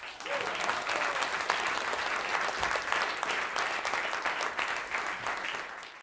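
Audience applauding, steady dense clapping that starts suddenly and eases off a little near the end.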